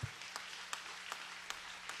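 Congregation applauding: a light, even patter of many hands clapping, with a faint steady low hum underneath.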